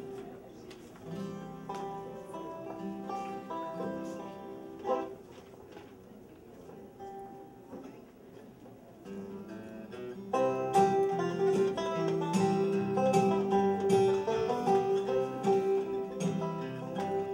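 Acoustic guitar and banjo playing quietly, with plucked notes over a repeated low note; about ten seconds in the playing turns fuller and louder as the instrumental intro gets going.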